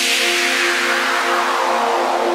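Trance breakdown: a held synth chord with no drums or bass, under a whooshing noise sweep that falls steadily in pitch.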